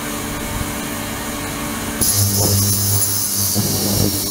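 Ultrasonic cleaning tank running, a steady hum under a hiss from the agitated water. About two seconds in, the high hiss and the low hum step up abruptly as the control box switches the system back on in its on/off control cycle.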